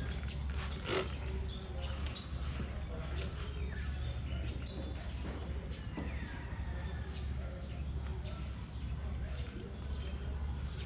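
A single short spray from a trigger spray bottle of glass cleaner about a second in, then a microfiber towel wiping the car's windshield, over a steady low hum with faint bird chirps.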